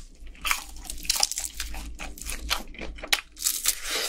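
Crispy fried chicken crunching as it is bitten and chewed, a steady run of crackling crunches from the crust.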